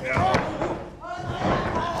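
Short shouted voices in the wrestling ring, with a sharp thud on the ring about a third of a second in.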